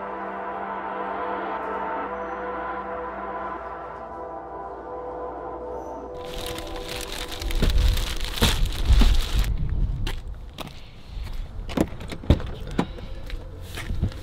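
Soft ambient background music for the first half. About six seconds in it gives way to a plastic shopping bag rustling and crinkling as it is handled in a car trunk, with low thumps and a few sharp knocks.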